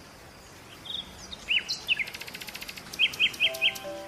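Small birds chirping: a few short high calls, then a fast clicking trill and four quick repeated chirps in the second half. Soft sustained music notes come in near the end.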